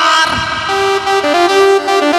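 Live band instrumental break: an electronic keyboard plays a melody of short held notes stepping up and down in pitch over a sustained chord.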